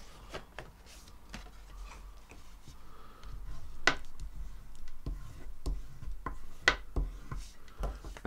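White cardstock card base being folded in half and burnished along the crease with a bone folder: soft rubbing and sliding of paper, with scattered taps and clicks, the sharpest about four seconds in and again near seven seconds.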